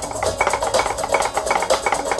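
Wooden drumsticks striking a practice surface in quick, even strokes, about four or five a second, playing along with recorded music.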